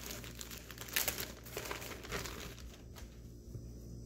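Thin clear plastic packaging bag crinkling and rustling as hands open it and pull a drawstring pouch out, in irregular crackles that are busiest in the first couple of seconds and die down near the end.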